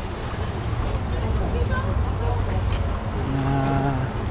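Steady low outdoor rumble, with a man's long, level-pitched hesitation 'uhh' held for most of a second near the end.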